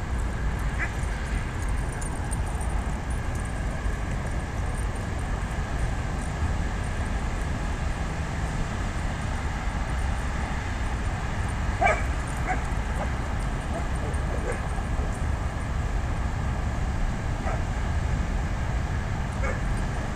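Dogs at play giving a few short, scattered barks and yips, the loudest about halfway through, over a steady low background rumble.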